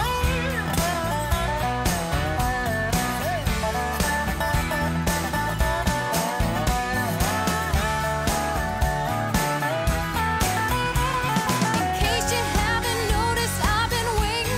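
Country-rock instrumental break: a lead guitar plays bending, sliding notes over a steady drum beat, bass and rhythm guitar.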